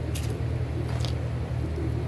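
A steady low rumble, with a few faint clicks and rustles as a leather saddle cinch strap is handled and worked at its buckle.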